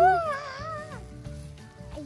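A child's drawn-out, wavering squeal that dies away about a second in.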